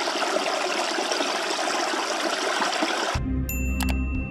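Small stream running over rocks, a steady rush of water that cuts off suddenly about three seconds in. Soft ambient music takes over, with a low drone and a bright chiming sparkle.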